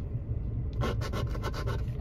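A coin scratching the coating off a scratch-off lottery ticket in quick, repeated strokes, starting a little under a second in.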